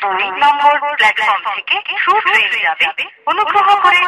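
Speech only: a recorded Indian Railways station announcement, the voice sounding narrow and telephone-like, with a short pause about three seconds in.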